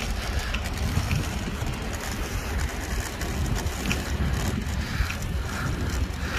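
Wind buffeting the microphone of a camera carried on a moving bicycle: a steady low rumble with a faint hiss over it.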